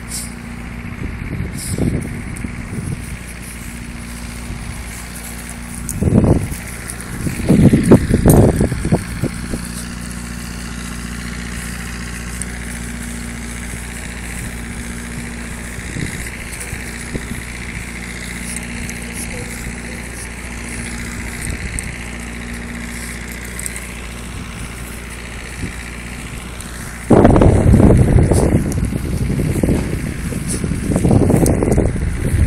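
A steady low mechanical hum, like an idling engine, with gusts of wind buffeting the microphone about six seconds in, around eight seconds in, and from near the end.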